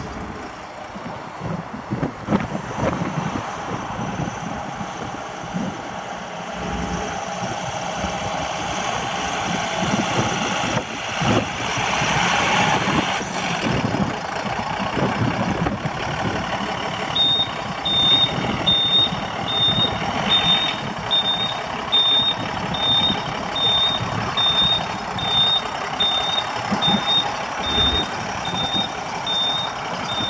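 A 2007 Ford LCF box truck's 4.5-litre Power Stroke V6 diesel runs as the truck manoeuvres. A little past halfway, a reversing alarm starts: a steady high beep repeating a little faster than once a second.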